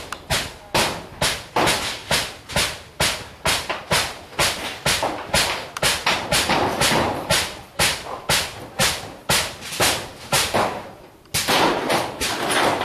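Footsteps of someone walking over rough ground with a handheld camera, a steady pace of about two steps a second, each a sharp thump; they pause briefly near the end, then go on.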